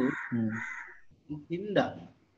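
A harsh bird call, two rough noisy bursts in the first second, behind the narrator's brief murmured sounds.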